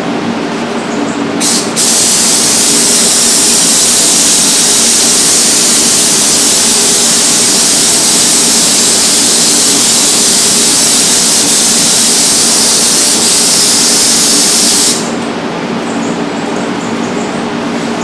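Gravity-feed spray gun spraying finish onto a wood panel, a loud steady hiss of air and atomised finish lasting about thirteen seconds and cutting off sharply, after a brief trigger blip near the start. Under it runs the steady drone of the spray booth's ventilation.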